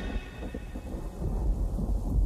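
Low, uneven rumble with a faint hiss, left after the bass-boosted electronic music has cut off, like distant thunder and rain.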